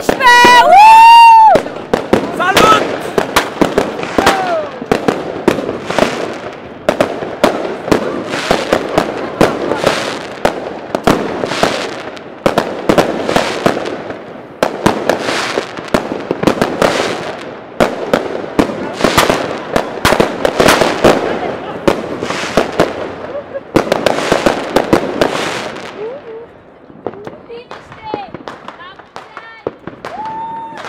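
Fireworks and firecrackers going off in rapid succession, many loud bangs overlapping with crackle, thinning to a few scattered bangs in the last few seconds.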